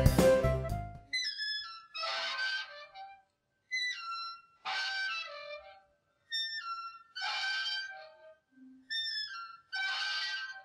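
Playground swing squeaking as it moves back and forth: a high squeak that steps down in pitch alternates with a rougher squeak, one pair about every two and a half seconds, four times. Background music fades out in the first second.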